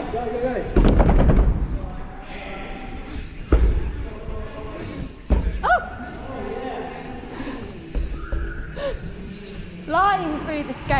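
Mountain bike riding over skatepark ramps, heard from a chest-mounted camera. There is a rattling rush about a second in, then sharp thumps of the tyres hitting the ramps at about three and a half seconds, five seconds and eight seconds.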